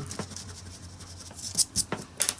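Hands handling a paper page and pencil on a plastic-covered table: light rustling with a few sharp taps and clicks, a cluster of them near the end as the pencil is picked up, over a faint steady hum.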